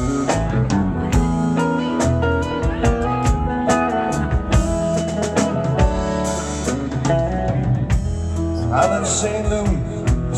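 Live rock band playing an instrumental passage: electric guitar over bass and drums, with no vocals.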